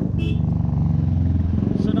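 Royal Enfield motorcycle engine running as the bike rides along, a steady low beat heard from the rider's seat.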